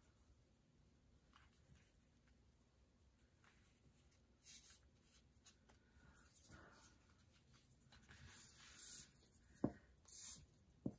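Faint rustling of paper and lace being handled and pressed onto a journal page, louder shortly before the end, with one sharp knock near the end.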